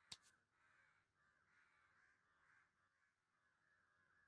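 Near silence: a pause in the soundtrack, with only a very faint background and a tiny click near the start.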